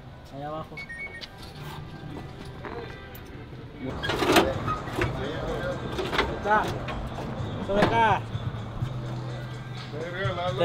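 Men's voices calling out and laughing, loudest a little past the middle, over a steady low hum, with a few light clinks of metal and plastic parts being handled.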